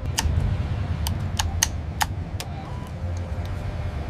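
Sharp clicks of cockpit overhead-panel switches being flipped, about half a dozen in the first two and a half seconds, over a steady low hum.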